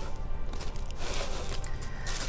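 Soft background music, with a faint rustle of shredded paper packing filler being stirred by hand in the second half.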